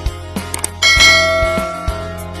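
A bright bell-like chime sounds about a second in and fades away over the next second, over background music with a steady beat.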